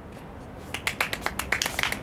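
Footsteps of shoes on a tiled floor: a run of quick, irregular clicking steps that begins a little under a second in.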